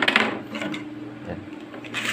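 Hard PVC conduit pipes being handled on a wooden tabletop, knocking and clattering lightly, loudest right at the start.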